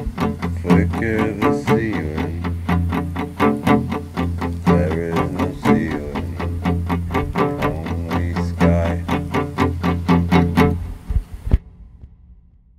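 Instrumental music: quickly picked guitar notes over a steady low drone. It thins to a few last notes and cuts off shortly before the end.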